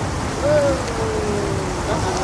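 A single drawn-out hum-like vocal sound, sliding slowly downward in pitch, as a shot of vodka is swallowed. It sits over a steady rushing outdoor background noise.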